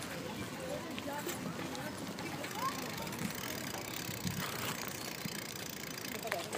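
Faint, indistinct voices with no clear words over a steady rushing noise of wind and movement.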